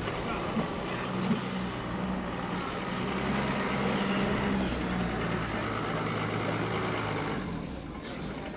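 Pickup truck engine running as it drives past, growing louder through the middle and fading away near the end.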